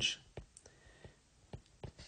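Faint, irregular taps of handwriting on a tablet touchscreen: several short, sharp clicks spread unevenly over two seconds.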